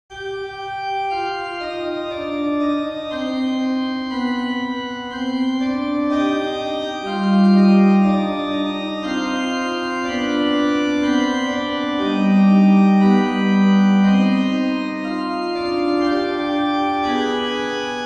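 Pipe organ playing a very slow, dark three-part fugue in sustained, held notes: one line opens the theme and further voices join in imitation.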